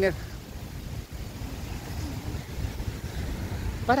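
Low, fluctuating rumble of wind buffeting a handheld phone's microphone while riding a bicycle, in a pause between spoken phrases.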